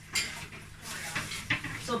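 Ceramic plates and dishes clinking and knocking against each other at a kitchen sink as they are handled, a few separate knocks.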